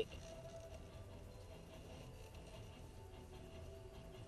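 Faint music from a car radio tuned to the light display's broadcast, a few held notes, over the low rumble of the car rolling slowly.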